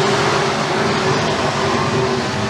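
Engines of several RUSH Pro Mod dirt-track race cars running hard together as the pack races through a turn, a steady drone.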